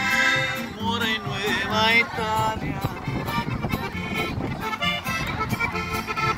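Live norteño band playing an instrumental passage between sung verses: a three-row button accordion carries the melody with runs, while an acoustic guitar and an upright bass keep the rhythm.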